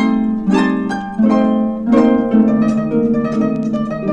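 Two concert harps playing together, from a 1952 LP recording: plucked chords and running notes that strike clearly and ring on as they fade.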